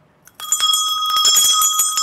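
Brass hand bell shaken rapidly, its clapper striking about seven times a second, starting about half a second in; the ringing tones hang on between and after the strikes. It is rung as an opening bell for the market.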